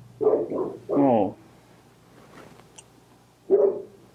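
A man's muffled, closed-mouth 'mmm' sounds while chewing a mouthful of burger: two short ones, a longer one about a second in, and another near the end.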